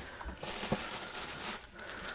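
Soft rustling of packaging being handled, with a couple of faint light ticks.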